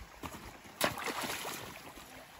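A stone tossed into a shallow creek lands with a sudden splash just under a second in, followed by a brief wash of water.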